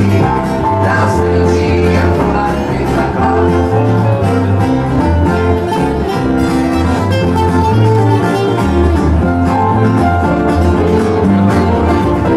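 Live band playing through a PA: acoustic guitar over a moving bass line, at a steady loudness.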